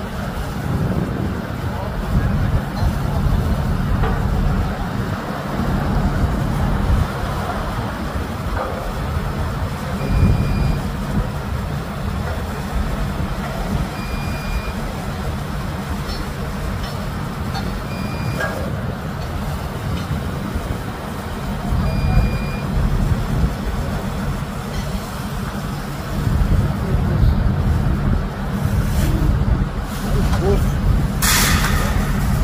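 Engine of heavy construction plant running steadily with a deep rumble. From about a third of the way in, a short high warning beep sounds four times, about four seconds apart.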